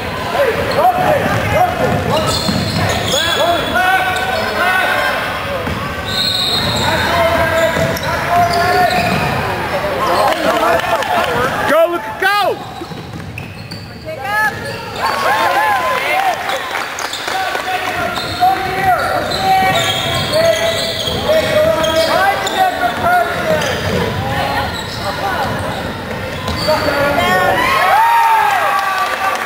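Basketball being played on a gym's hardwood floor: many short, rising-and-falling sneaker squeaks and the thud of the ball being dribbled, with spectators' voices, all echoing in the hall. It eases off briefly about halfway through.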